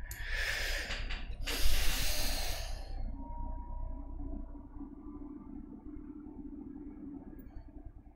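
Two long breathy rushes of air close to the microphone, a man exhaling or sighing, the second louder and ending about three seconds in. After that only a faint low hum remains.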